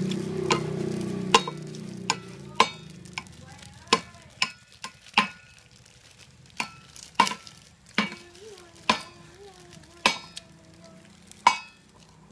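Metal spoon clinking against a stainless-steel bowl and dishes: about a dozen sharp clinks at irregular intervals of half a second to a second. A low hum fades out in the first two seconds.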